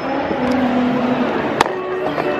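Steady city street noise, with one sharp knock about one and a half seconds in as the handheld camera is set down on the pavement.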